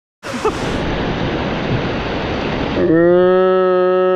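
Fast stream rushing and splashing over rocks. About three seconds in, a long, steady pitched tone comes in over it and holds to the end.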